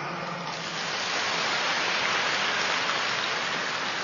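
Audience applauding in a large hall; the clapping swells over the first second or two, then slowly dies away.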